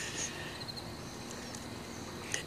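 Quiet outdoor background with a faint, steady high-pitched insect buzz.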